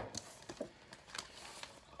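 Faint scattered taps and rustles of a tarot deck being handled and shuffled in the hands.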